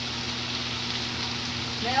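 Chopped cabbage frying in a full skillet: a steady sizzle, with a low steady hum underneath.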